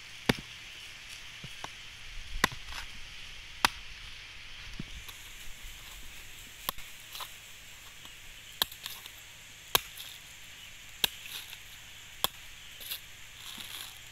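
Knife blade chopping into the fibrous husk of a mature coconut resting on a wooden stump, splitting the husk open. About eight sharp strikes, roughly one to two seconds apart.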